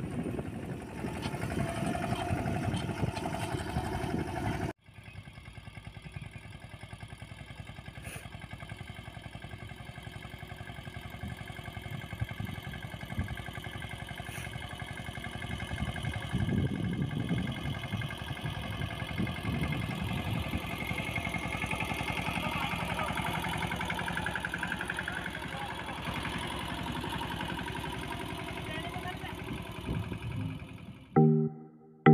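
Mahindra Yuvraj 215 NXT mini tractor's single-cylinder diesel engine running steadily while it pulls a seed drill through tilled soil. The first five seconds, close to the drill's seed box, are louder, then the sound breaks off suddenly and carries on steadier.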